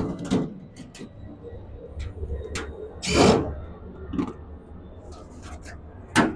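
Cordless drill run in short bursts, backing screws out of a dehumidifier kiln unit's sheet-metal side panel, with clicks and metal rattles of the panel being handled between the bursts. The loudest burst comes about three seconds in, and a low hum runs underneath.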